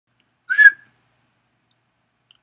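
A single brief, high whistle-like tone about half a second in, rising slightly in pitch.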